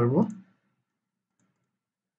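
A man's speech trails off in the first half-second, then near silence broken by a single faint computer mouse click about 1.4 seconds in.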